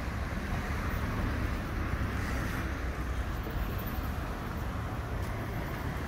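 Steady hum of road traffic from passing cars, with a low rumble underneath.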